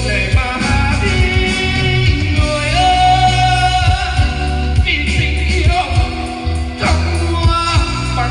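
A man singing a Vietnamese song into a microphone with a live band of electric guitar and keyboards, over a steady bass beat.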